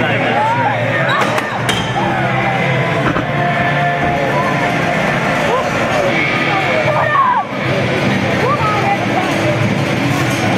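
Hall crowd chatter with music playing underneath, steady throughout; no single impact or motor sound stands out.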